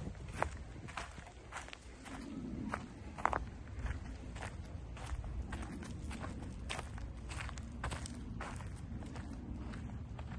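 Footsteps through forest undergrowth, with irregular crackles underfoot over a low rumble.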